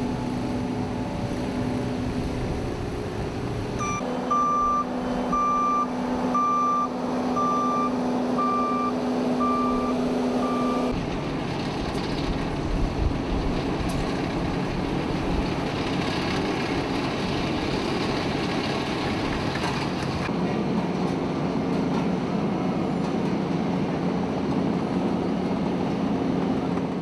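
Engines of heavy roadworks vehicles, dump trucks and a road roller, running steadily. A reversing alarm beeps about eight times, roughly once a second, between about four and eleven seconds in.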